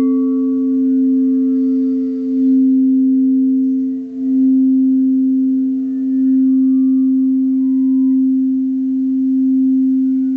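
Crystal singing bowl being rimmed with a mallet, holding one low, steady note that swells gently every second or two. The bowl is the red root-chakra bowl. The level dips briefly about four seconds in, and faint higher tones come and go above the note.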